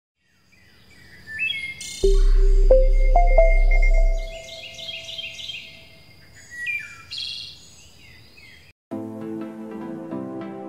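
Birdsong sound effect, chirps and trills, with a deep low tone and a few ringing notes about two seconds in; music starts near the end.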